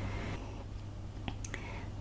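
Quiet handling of small beaded cross-stitch pieces on perforated plastic canvas as they are swapped in the hand, with two light clicks past the middle, over a steady low hum.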